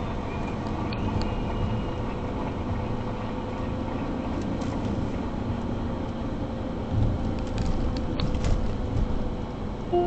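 Car driving: steady road and engine noise heard inside the cabin, with a faint steady hum and a couple of louder low bumps about seven and eight and a half seconds in.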